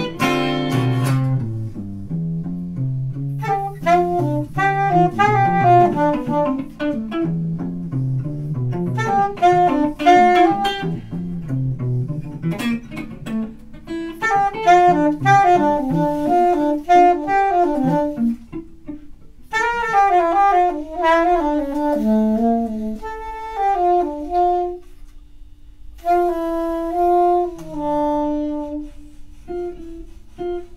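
Live jazz duo: an alto saxophone plays a melody over an archtop electric guitar. The guitar accompaniment is busy through the first half. After about 13 seconds the saxophone leads over sparser guitar, holding longer notes near the end.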